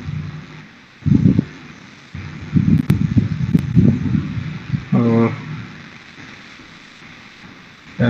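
A man's voice in short, low fragments with pauses between them, including a brief drawn-out hesitation sound about five seconds in. There is a single sharp click near three seconds.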